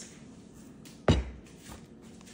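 A single dull thump about a second in, with a faint click just before it, against an otherwise quiet room.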